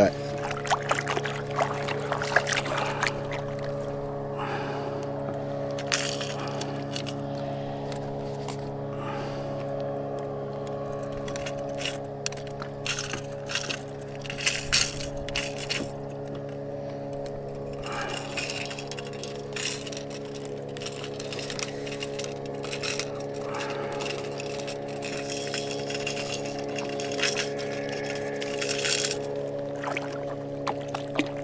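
Irregular clicks and rattles as a landed pike is handled and a jerkbait is worked free of its mouth, over a steady low hum.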